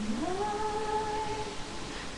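A singing voice holding one long note that slides up about an octave at its start.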